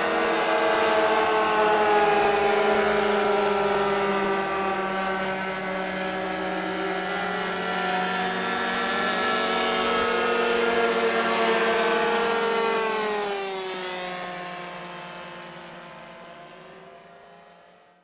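Small engines of several radio-controlled pylon-racing model airplanes running flat out, their pitch rising and falling as they pass. The sound fades out over the last few seconds.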